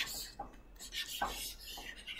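Stylus scrubbing back and forth on a pen tablet's surface while erasing handwriting, a run of short scratchy strokes.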